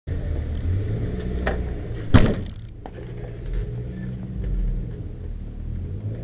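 Track car's engine idling steadily, heard from inside the car. There is a light knock about a second and a half in, then a loud thump just after two seconds.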